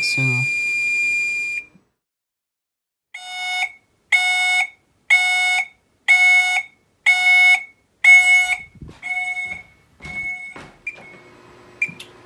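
Gent fire alarm sounder: a steady high electronic tone that cuts off about a second and a half in. After a short silence it sounds a pulsed tone about once a second for several seconds, fading near the end. A few short control-panel key beeps follow.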